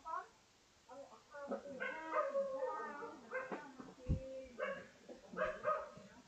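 Indistinct voices in the background, with no clear words.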